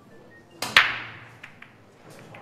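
Break shot in Chinese eight-ball. A click of the cue on the cue ball is followed an instant later by a loud crack as the cue ball smashes into the racked balls, ringing away. Two lighter clicks of balls colliding come after it.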